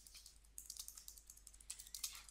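Typing on a computer keyboard: a run of quick, faint keystrokes as a short name is typed.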